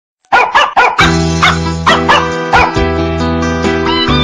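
Ringtone: three quick dog barks, then more barks over a music backing that starts about a second in.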